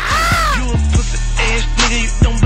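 A short, high, drawn-out shout that rises and then falls in pitch, lasting about half a second. A hip hop beat with heavy bass and a kick drum then comes in.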